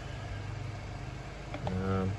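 A steady low engine hum with faint regular pulses, like a motor idling. A man starts to speak near the end.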